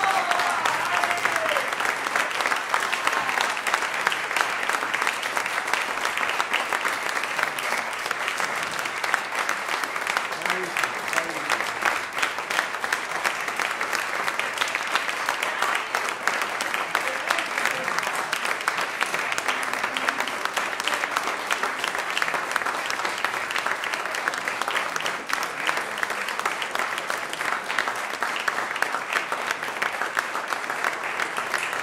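Audience applauding: dense, continuous clapping that keeps a steady level throughout.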